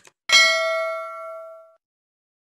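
A quick click, then a bright bell ding made of several ringing tones that fades out over about a second and a half: the click-and-bell notification sound effect of a subscribe-button animation.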